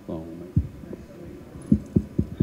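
A short voiced sound, then several sharp low thumps on a handheld microphone.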